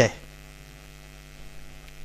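A steady electrical hum, a low drone of evenly spaced tones, underlying the recording during a pause in speech; a man's voice trails off at the very start.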